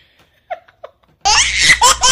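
Two short, faint, stifled giggles, then about a second in a burst of loud laughter starts, in quick even "ha" pulses about five a second.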